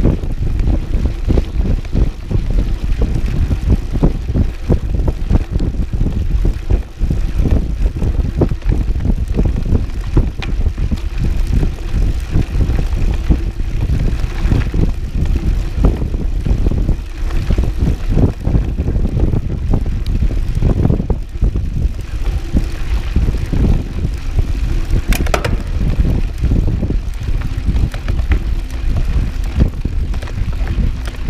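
Wind buffeting a GoPro microphone while a cross-country mountain bike rides fast over a gravel fire road, with a steady low rumble and constant irregular rattles and knocks from the bike over the rough surface.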